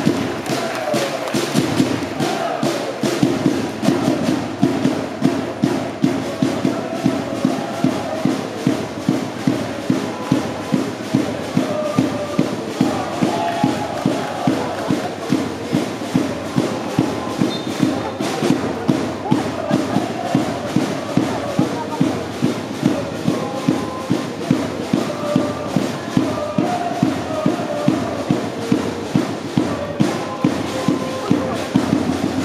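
Football supporters chanting together to a bass drum beaten steadily about twice a second.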